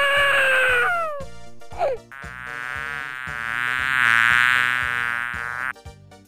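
A brief falling cartoon wail in the first second, then a buzzing-insect sound effect. The buzz swells, peaks about four seconds in and fades, then cuts off near the end.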